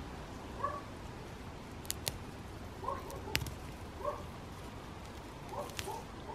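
Fresh sage sprigs snapped off by hand from a potted plant: a few sharp, separate snaps. Between them come faint, short calls of an animal.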